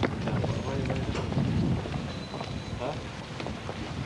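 Wind buffeting the microphone as a low, uneven rumble, with indistinct voices mixed in.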